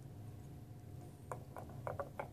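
Glass nail polish bottle being capped and handled: a few light clicks of the plastic cap against the glass, starting about a second in, roughly three a second.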